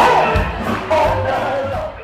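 Live band music with a steady drum beat, mixed with a crowd shouting and cheering. The sound fades down near the end.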